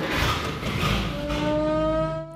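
The engine of a 1937 Dodge fire truck starting up and running, a loud, dense rumble. About a second in, music comes in with a held, slowly rising note.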